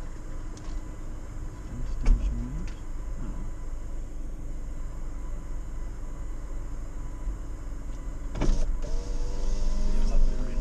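Off-road 4x4's engine running at low revs, heard from inside the cab as a steady low rumble, with a few knocks and rattles from the vehicle, one about two seconds in and a louder one near the end.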